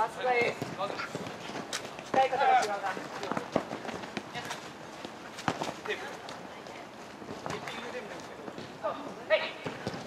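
Futsal match play: the ball being kicked with several sharp, separate thuds, players' feet on artificial turf, and players' short shouts near the start, around two seconds in (the loudest part) and near the end.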